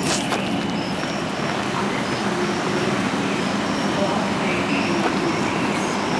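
Outdoor evening ambience: indistinct voices of a group over a steady background roar, with short high chirps repeating about once a second.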